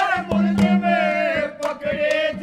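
A male voice singing a ragini folk song, the melody bending and sliding, over a steady held drone note, with a few hand-drum strokes near the end.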